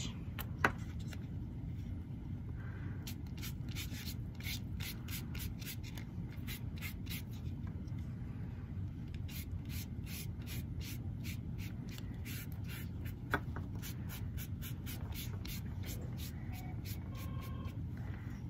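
Foam sponge brush stroking wet onion-skin dye across a paper index card, quick repeated strokes about three a second, starting a few seconds in.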